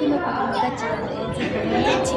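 Chatter of several voices, with no single clear speaker, in a large hall.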